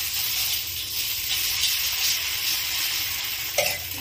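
Dosa batter sizzling steadily on a hot griddle as the back of a ladle spreads it out in circles, with one brief knock near the end.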